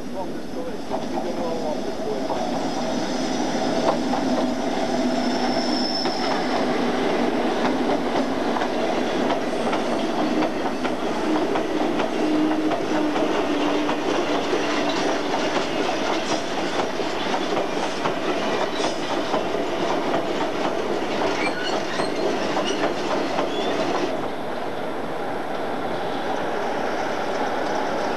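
Class 60 diesel-electric locomotive passing at speed with a train of MGR coal hopper wagons: a steady engine drone, then the long, continuous rumble and rapid clatter of the wagon wheels over the rails. The sound changes abruptly and drops in level about 24 seconds in.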